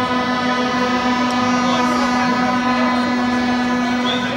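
A horn blown by a fan in the crowd, one long note held steady in pitch, over the general noise of the crowd.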